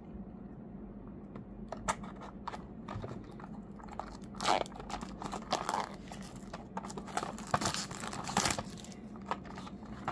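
A small cardboard model-car box being handled and opened by hand: crinkling and tearing of card with scattered clicks, in bursts, the loudest about halfway through and again near the end.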